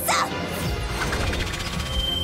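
Cartoon power-up sound effects over background music: a sudden crash-like burst at the start, then a dense rushing effect with a low rumble that carries on to the end.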